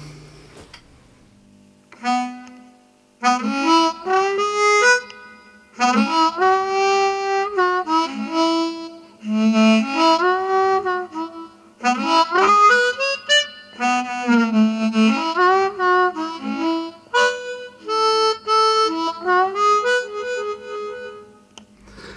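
Harmonix2 wireless electric harmonica played in a run of short phrases, with many notes bent up and down in pitch. A short single note sounds about two seconds in, and the playing proper starts a second later.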